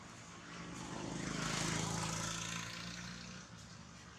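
A motor passing by: a low engine drone swells to a peak about halfway through and fades away over about three seconds.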